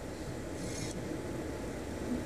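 Steady low room hiss with a faint, brief rustle about half a second in.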